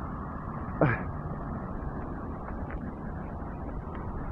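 Steady road and engine noise inside a moving car, with one brief short sound about a second in.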